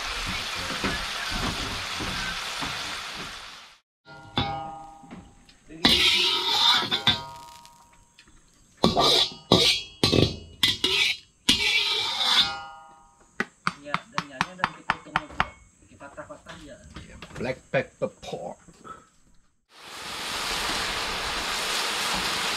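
Chicken sizzling in hot oil in a steel wok for the first four seconds and again from about twenty seconds in. In between, a long stretch of sharp clicks, knocks and brief ringing tones as a metal spatula works the nearly empty wok.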